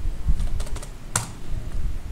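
Computer keyboard being typed: a few quick key taps about half a second in, then one louder keystroke a little after a second. It is the sound of entering a line length of 100 in AutoCAD's line command and pressing Enter.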